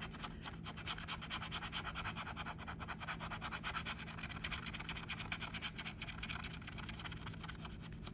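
The metal edge of a bottle opener scraping the scratch-off coating from a lottery ticket in rapid, even back-and-forth strokes.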